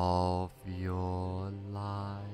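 Deep male voice chanting held notes, mantra-like, in meditation music: a short note, then a longer one starting about half a second in.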